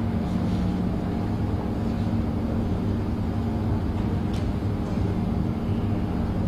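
A steady low hum over a faint background din, with a couple of faint clicks.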